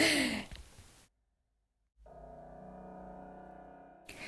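A woman's short breathy sigh, falling in pitch, then a second of dead silence at an edit. Soft music with one held chord then fades in.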